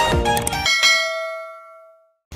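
Background music cuts off, and after a short click a bell-like chime of several tones rings out and fades away to silence over about a second.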